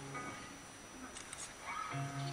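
Live band in a lull of playing: faint held instrument notes fade out just after the start, leaving low hall noise. Near the end a short rising sound is followed by a low held note coming back in.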